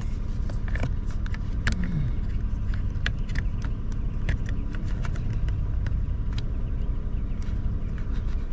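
Honda Odyssey idling, a steady low hum heard from inside the cabin, with scattered small clicks of a plastic wiring connector being handled and pushed onto the front blower motor. The front blower does not start: it is not working even with the connector plugged in.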